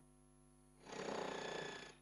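Electric demolition hammer breaking up the stone masonry of a minaret, a steady rapid rattle that starts just under a second in and runs fairly quietly until just before the cut.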